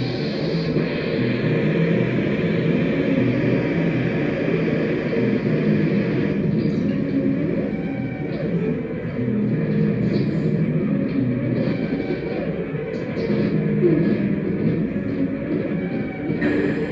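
Improvised electronic drone music from patch-cabled synthesizer gear: a dense, steady wash of sustained low tones, with small scattered clicks and crackles coming in about halfway through.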